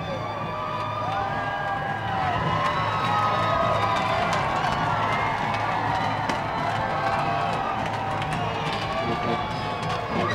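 Large concert crowd cheering and yelling, with many voices overlapping in long shouts and whoops while waiting for the band to come on.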